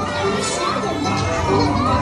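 Dark-ride soundtrack: playful music with voices over it, including children's voices.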